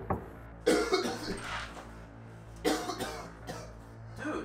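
A man coughing in harsh fits, twice, about two seconds apart. The coughing is put on, part of a faked illness.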